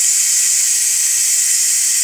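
Casamom Instant Cook electric pressure cooker venting steam through its pressure-release valve, turned open by hand to let the pressure out after cooking rice: a loud, steady high hiss.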